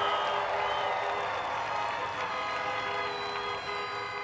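Crowd cheering and applauding, with many car horns honking together as long steady tones at several pitches.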